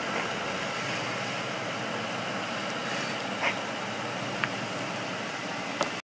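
2008 Ford Crown Victoria Police Interceptor's 4.6-litre V8 idling steadily as the car rolls slowly backward. A few brief clicks come in the second half.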